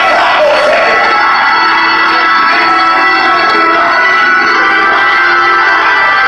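Hammond-style electric organ playing loud, sustained chords.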